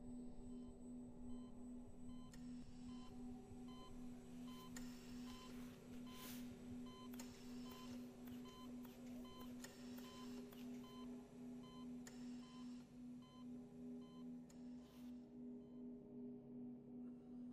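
Quiet electronic soundtrack: a low drone pulsing about twice a second under short, evenly spaced high beeps, like a monitor, with a couple of brief rushing swells.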